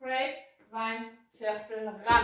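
A woman's voice calling out short words in a steady rhythm, about two a second: speech only.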